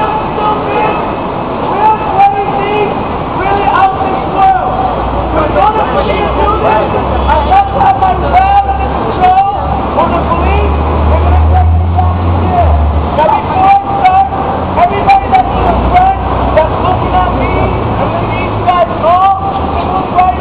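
Busy city-street ambience: indistinct overlapping voices of people nearby, over a deep rumble of heavy traffic that swells about a third of the way in and fades near the end.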